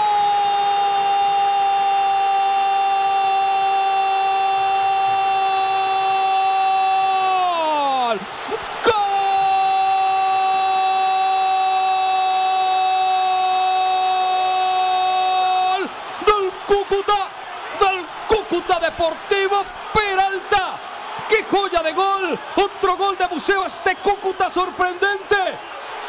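Football commentator's drawn-out goal cry: one high shouted vowel held for about eight seconds that drops in pitch at the end, a short breath, a second held cry of about seven seconds, then rapid excited shouting from about sixteen seconds in.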